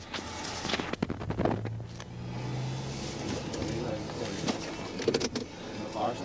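A pickup truck towing a utility trailer drives past, over a low steady hum, with muffled voices in the background.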